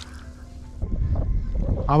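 Wind buffeting a GoPro's built-in microphone: a low rumble that comes up about a second in and stays loud. It is the sound of wind noise with no external microphone fitted to the GoPro.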